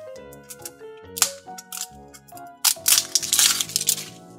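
Plastic shrink-wrap being torn and crinkled off a small plastic toy capsule: a short tear just after a second in, then a longer, louder crinkling run through the last second and a half. Background music plays underneath.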